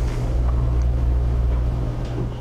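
A steady low rumbling drone with a faint hiss above it.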